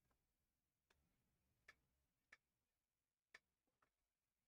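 Near silence broken by about five faint, sharp clicks at uneven spacing: trading cards being handled and set down on the table.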